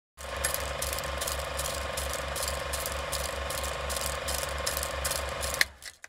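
A small clicking mechanism running steadily, a rapid, even run of about five clicks a second, that stops suddenly with a sharp click near the end.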